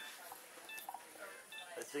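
Bedside patient vital-signs monitor beeping: short, high-pitched beeps repeating a little under a second apart.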